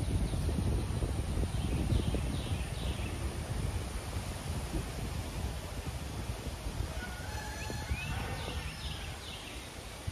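Outdoor ambience: a low wind rumble on the microphone, with a bird chirping briefly a couple of seconds in and again in a longer run of chirps and whistles near the end.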